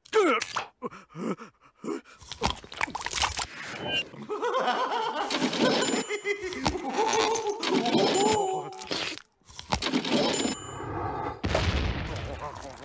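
Cartoon eating sound effects: a run of sharp crunching bites and thunks. About four seconds in, a long wavering moan of pleasure takes over for several seconds, followed by more sharp crunches near the end.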